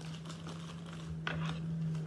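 A thin plastic packaging bag crinkling as it is handled and shaken, with one louder rustle a little past the middle. A low steady hum runs underneath.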